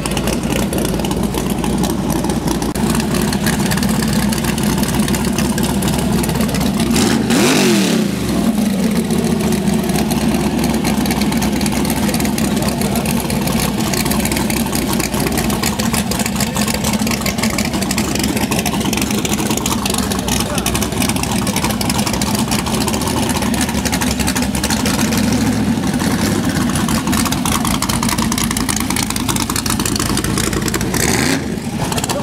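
Classic muscle car's engine idling loudly, with one sharp rev about seven seconds in that rises and falls back to idle. Crowd voices run underneath.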